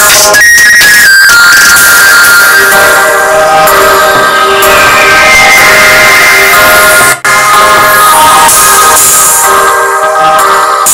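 Loud electronic dance music with synth lines, played through a Kicker 6.5-inch coaxial car speaker under test. The music cuts out briefly about seven seconds in.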